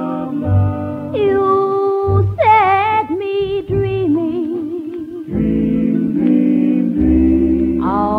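Instrumental break in a 1953 R&B record: held melody notes, some with a wavering vibrato, over a bass line that sounds about once a second.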